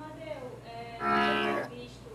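A woman's voice makes a short falling hesitation sound, then a steady, drawn-out filler vowel about halfway through, as she gathers herself before speaking.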